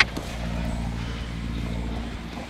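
Sportfishing boat's engine running with a steady low drone.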